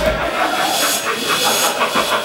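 Audience applauding as the backing track ends, its bass cutting out just after the start.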